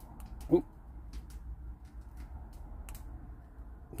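Quiet spell with a low steady hum, broken by a short spoken "oh" about half a second in and a few faint, sharp clicks.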